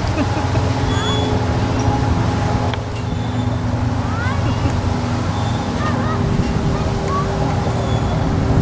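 Steady low rumble of vehicle traffic with a droning engine hum that shifts in pitch a couple of times, and short high chirps scattered over it.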